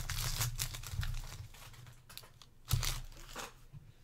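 Foil trading-card pack wrapper being torn open and crinkled by hand, dense crackling for the first second, then scattered crackles with one sharp one about three seconds in.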